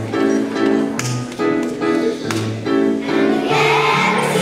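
Music: an instrumental introduction of short repeated chords over bass notes, then a children's choir starts singing near the end.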